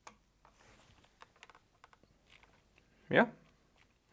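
Faint, scattered small clicks and taps from hands handling a graphics card fitted with a clear plastic-shelled Thermaltake Tide Water cooler.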